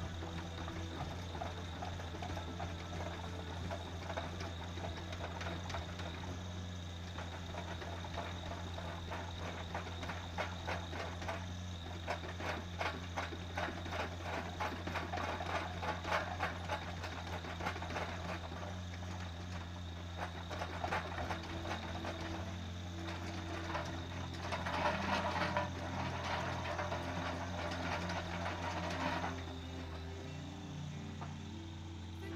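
Excavator's diesel engine running with a steady low drone while its tined skeleton bucket is shaken to sift out soil, the bucket and its linkage rattling rapidly. The rattling grows louder in two spells, in the middle and near the end.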